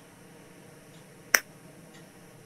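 A single sharp click a little over a second in, over a faint steady hiss.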